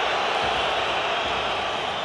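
Football stadium crowd: a steady din of many voices from the stands.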